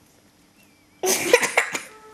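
A person coughing: a sudden harsh burst about halfway in, lasting under a second, after a faint first second.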